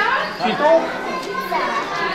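Speech: a man asking a child a short question, over children's voices and chatter in a large room.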